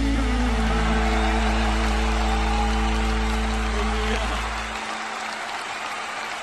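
The band's final held chord, with its bass note, ends a live gospel song and fades out about four and a half seconds in, under audience applause that carries on after it.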